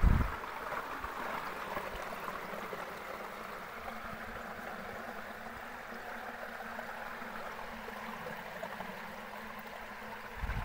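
Water rushing steadily down a bamboo fish-trap channel and over its slats, with one low thump right at the start.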